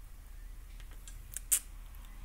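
A few small clicks of a remote control's directional pad being pressed to scroll through a menu. The loudest click comes about one and a half seconds in.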